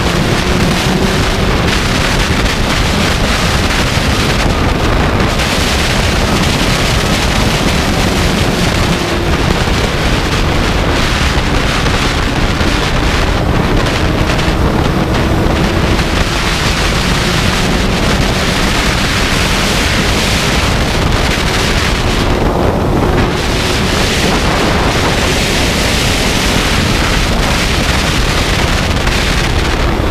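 Loud, steady wind rush buffeting the microphone of a sport motorcycle at high speed, with the engine's drone underneath, its pitch drifting slowly up and down.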